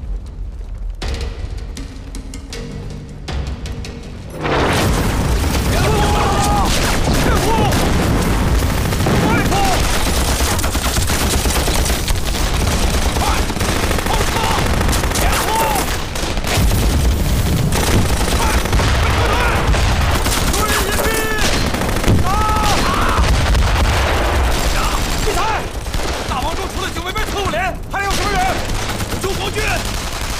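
Staged battle sound: a few seconds of music over a low rumble, then, about four seconds in, a sudden loud din of massed rifle and machine-gun fire with explosions and men shouting, kept up to the end.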